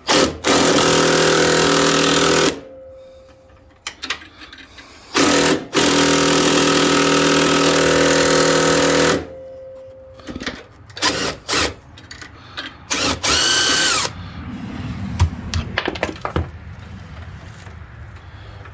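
Cordless impact driver hammering on a tight bolt through a 13 mm socket, a loud steady rattle in two long bursts of about two and four seconds. Afterwards come a few light clicks and a short whir near the end. The bolt proves hard to break loose.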